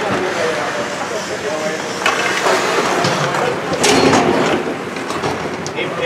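Ice-arena ambience during a hockey game: indistinct voices of players and spectators echoing in the rink, with skate blades scraping the ice in surges and occasional sharp clacks of sticks.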